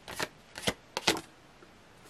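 Tarot cards handled and slid against each other as one card is drawn from a hand-held deck: four short, sharp card flicks within the first second or so.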